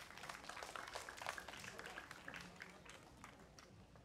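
Faint audience applause, many hands clapping with a few voices mixed in, just after a song has ended; the clapping thins out toward the end.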